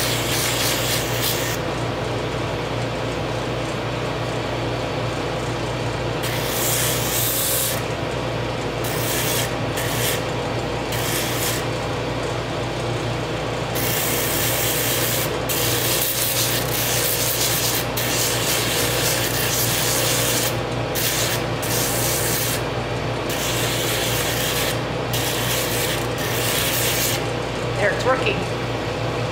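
Pneumatic drum sander running steadily, with a small piece of wood pressed against its spinning sleeve in repeated passes. Each contact adds a gritty rasping hiss over the motor hum, coming and going about six times.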